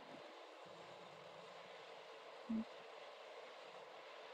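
Near silence: a faint steady hiss of background noise, broken once by a short, low sound about two and a half seconds in.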